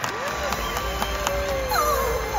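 A voice slides up quickly and holds one long, slightly falling note, like a sustained sung or whooped "ooh", over the murmur of an arena crowd.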